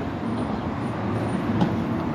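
Street traffic: a steady low rumble of vehicle engines.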